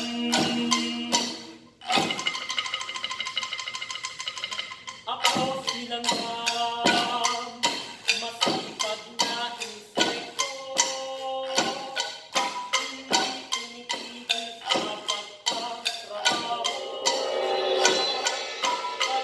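Live percussion ensemble playing struck, pitched instruments and woody knocks in a steady rhythm. About two seconds in comes a fast roll of rapid strikes lasting about three seconds, and then the rhythmic strikes resume.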